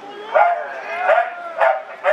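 BMX start-gate voice cadence called over a loudspeaker: four short, clipped calls about half a second apart, just before the start tones sound and the gate drops.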